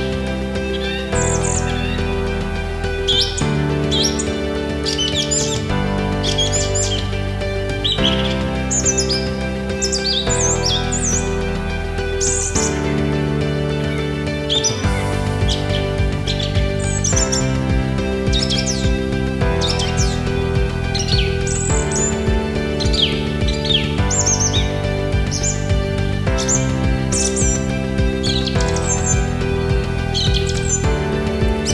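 Songbirds chirping and whistling in many short calls throughout, over background music of soft held chords. About halfway through, the music takes on a busier low rhythm.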